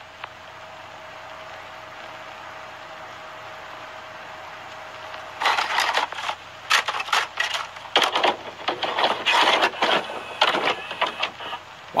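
Cartoon soundtrack over a black screen: a steady hiss with a faint hum, then, about five seconds in, loud irregular crackling and rattling bursts of noise.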